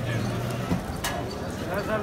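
Faint voices in the background over a low steady hum, with a single sharp click about halfway through.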